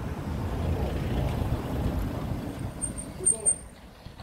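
A motor vehicle passing out of sight: a low engine and tyre rumble that swells and then fades, with a brief high-pitched squeak near the end.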